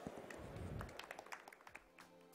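Faint, sparse clapping from a small audience: scattered single claps and taps.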